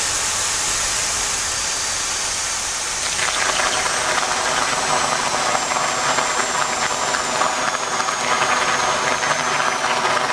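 Steady mechanical running noise with hiss, and a faint high whine that slowly falls in pitch. About three seconds in it turns louder and rougher.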